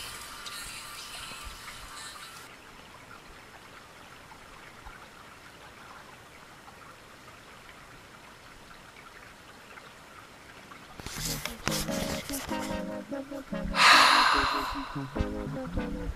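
A faint, steady trickle of a small creek running over rocks, heard with the music cut. Background music fades out in the first two seconds and comes back loudly about eleven seconds in.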